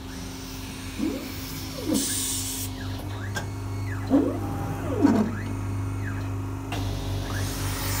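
Horizon HT-30C three-knife book trimmer running its cutting cycle: a steady motor hum, with drive motors whining down and back up in pitch in pairs about a second apart, repeating roughly every three seconds. A short hiss comes about two seconds in.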